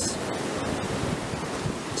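Ocean surf breaking and washing onto a rocky shore, a steady rush of noise, with some wind on the microphone.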